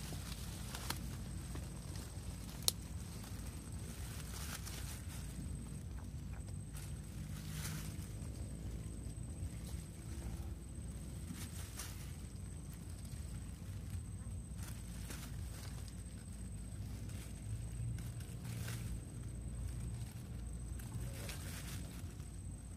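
Thin plastic bag crinkling and rustling now and then as small fish are handled and put into it, over a steady low rumble, with one sharp click about three seconds in.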